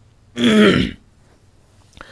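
A man clearing his throat once, a short rasp with a falling voiced pitch, about a third of a second in.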